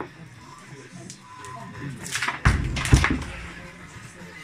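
Heavy concrete atlas stone thudding down twice, about two and a half and three seconds in, after a quieter stretch, with faint background music underneath.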